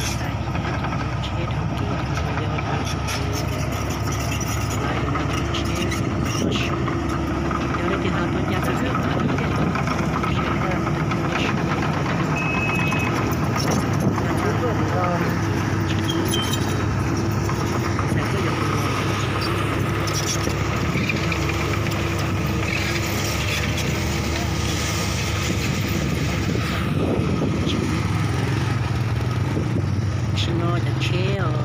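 Komatsu PC200 hydraulic excavator's diesel engine running at a steady pitch.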